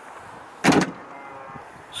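Range Rover Sport's soft-close tailgate shutting, with one short clunk a little over half a second in.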